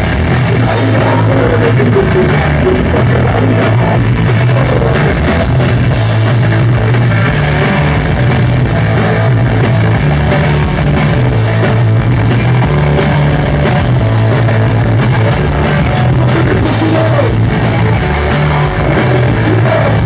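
Punk rock band playing live and loud: drum kit, electric bass and guitar, with the singer's vocals through the microphone.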